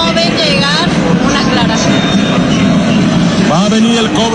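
Football stadium crowd: a steady din of spectators in the stands, with voices and a wavering vocal line rising out of it near the start and again near the end.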